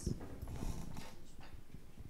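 Faint scattered knocks and rustles of handling noise, with no speech.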